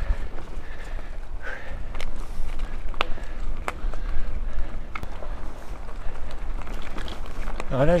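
Mountain bike riding fast over a leaf-covered dirt forest trail: a steady low rumble from the tyres and wind on the microphone, with sharp rattles and clicks from the bike as it goes over bumps.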